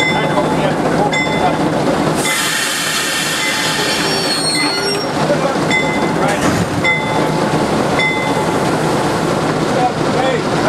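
Diesel locomotive running at idle, with its bell ringing about once a second. From about two to five seconds in, a loud hiss with a faint whistle in it covers the bell.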